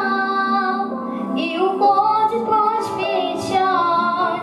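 A young girl singing a song into a handheld microphone over a steady instrumental accompaniment.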